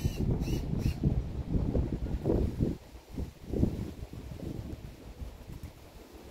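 Wind buffeting the microphone outdoors: an uneven low rumble that swells and fades in gusts. A few faint, short high chirps come within the first second.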